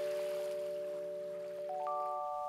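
A soft chime jingle: bell-like notes ring on, held and slowly fading, and three higher notes enter one after another in a quick rising run near the end.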